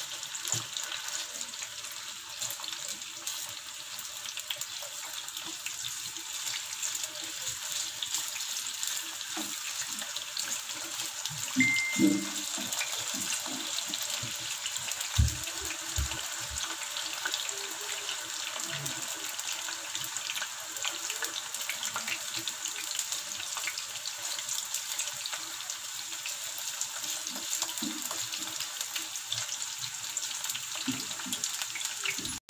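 Banana and potato pieces frying in oil in a small pan, a steady sizzle, while a spatula turns and scrapes them. A few low knocks come about halfway through.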